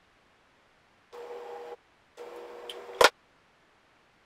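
Two brief stretches of faint hiss with a steady hum, then a single sharp click about three seconds in.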